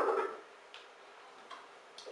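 A man taking a sip of water from a drinking glass: a short breath at the start, then near quiet with two faint clicks about a second in and again near the end.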